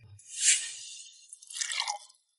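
Wine poured from a porcelain jug into a cup: a short splashing trickle near the end, after a soft hissing rustle about half a second in.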